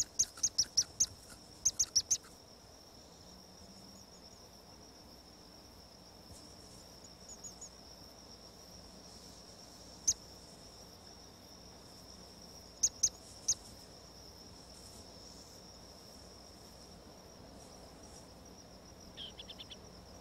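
A steady high-pitched insect trill, broken by short sharp chirps: a rapid run of them in the first two seconds, a single one about ten seconds in, three more about thirteen seconds in, and a faint quick cluster near the end.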